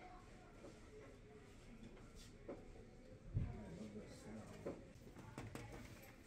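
Quiet room tone with a few faint clicks from objects being handled, and a brief low murmur of a voice a little past halfway.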